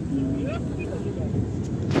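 Steady low rumble of road and engine noise inside a moving CNG car's cabin. A short knock near the end.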